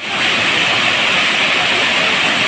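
A small waterfall tumbling over rocks: a steady rush of falling water that swells in quickly at the start.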